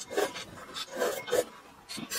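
Noodles slurped in off chopsticks in several short noisy pulls, close to the microphone, followed by chewing.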